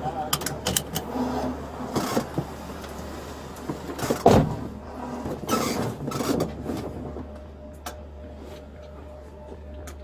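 Seatbelt webbing being pulled across a seated man in a patrol car's rear seat and latched: rustling and several sharp clicks in the first few seconds, then a heavy thump a little after four seconds in. A steady low hum runs underneath.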